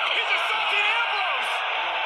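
A large arena crowd of many voices shouting at once, keeping up a steady din.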